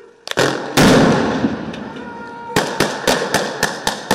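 A stun grenade goes off with one loud blast and a long decaying tail, followed by a quick string of about seven sharp gunshots in the last second and a half.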